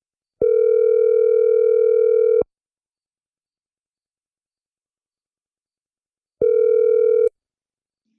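Telephone ringback tone while a dropped call is being redialled. It rings steadily for about two seconds, stops for about four, then starts again and is cut off partway through the second ring.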